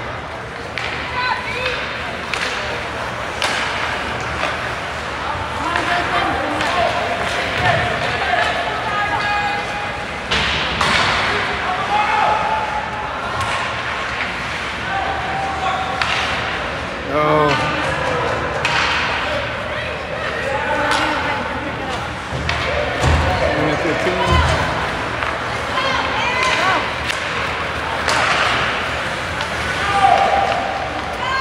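Ice hockey game in progress: players and spectators shouting across the rink, with sharp slams and clacks of puck and sticks against the boards now and then.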